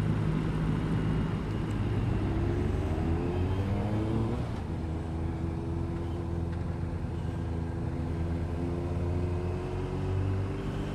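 BMW R1250 RT's boxer-twin engine pulling uphill: its pitch rises for a few seconds, drops suddenly about four and a half seconds in, then climbs slowly again. Under it runs a steady rush of wind and road noise.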